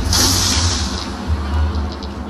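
Logo intro music with a deep, steady bass rumble and a bright burst of high noise at the start that fades away over about a second.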